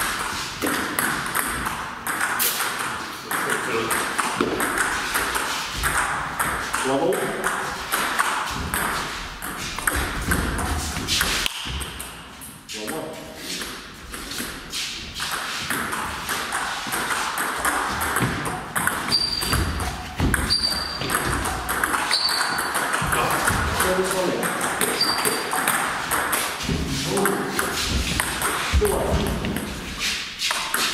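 Table tennis ball being struck back and forth with bats and bouncing on the table in rallies, a quick run of sharp clicks. Voices talk in the background, and a few short high squeaks come in the second half.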